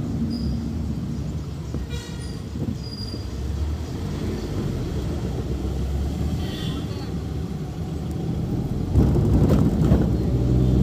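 Steady low road and engine rumble from a vehicle driving along a hill road. A brief horn toot sounds about two seconds in, and the rumble grows louder near the end.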